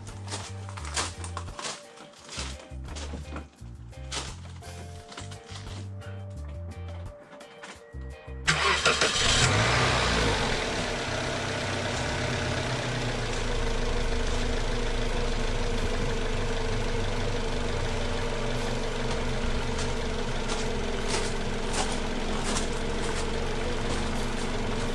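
A car engine is cranked and starts about a third of the way in, runs a little louder for a couple of seconds, then settles to a steady idle.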